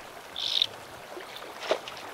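Short water splashes as a landing net scoops a hooked rainbow trout at the surface, over the steady wash of river water; the sharpest splash comes just before the end.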